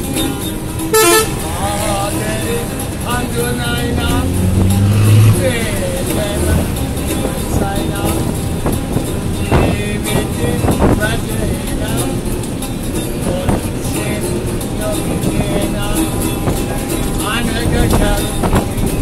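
Inside a moving bus: engine and road noise, with a loud horn toot about a second in, voices, and an acoustic guitar played under them.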